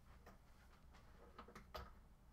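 Near silence with a few faint clicks of fingers pressing buttons on an Akai APC40 controller, the loudest shortly before the end.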